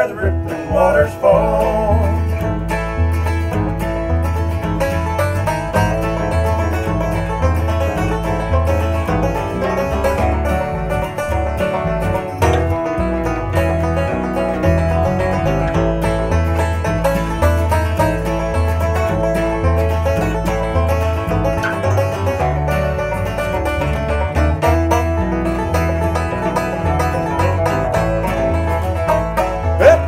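Bluegrass instrumental break: a five-string banjo picks a lead over strummed acoustic guitars and an electric bass that steadily alternates between two low notes.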